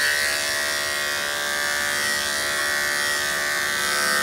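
Corded electric dog-grooming clippers running with a steady buzzing hum as they are passed through a goldendoodle's coat.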